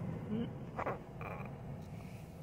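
Faint, short throaty sounds from a man between words, over a low steady hum.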